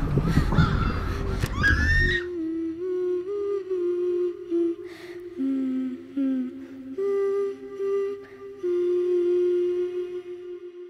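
Crows cawing over a dense, rumbling film soundscape that cuts off suddenly about two seconds in. Soft, slow music of long held notes follows, moving between a few pitches.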